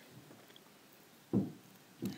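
Faint room tone while modelling clay is pressed into place by hand, with one short dull thump about two-thirds of the way in.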